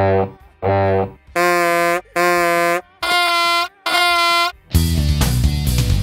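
Demonstration tones for low, mid and high pitch: a held musical note sounded twice low, then twice higher, then twice higher again, each note about half a second long. Near the end a loud, dense musical hit with deep bass comes in and carries on.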